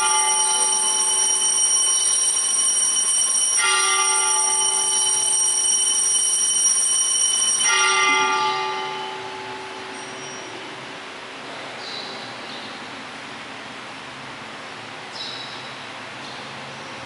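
Altar bell rung three times, about four seconds apart, marking the elevation of the chalice at the consecration. Each stroke rings on until the next, and the last fades out about halfway through, leaving faint room tone.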